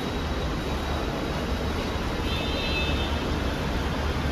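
Steady low rumble of idling car engines in an enclosed car park, with a faint high-pitched sound about two seconds in.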